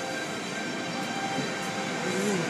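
Automatic car wash machinery running around the car, heard from inside the cabin: a steady rushing noise.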